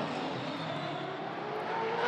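Supercars V8 race car engines at full throttle, the engine note rising steadily in pitch as the cars accelerate.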